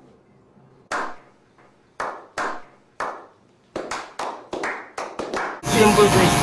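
A slow hand clap: single claps about a second apart that speed up into quick clapping. Near the end it cuts to electric hair clippers buzzing under a voice.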